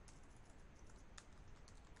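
Faint typing on a computer keyboard: a few scattered keystrokes.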